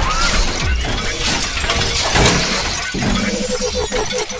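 Loud intro sound-effect track with music: a dense, noisy crashing sound full of sharp hits, with a rapid repeating ringing tone coming in about three seconds in.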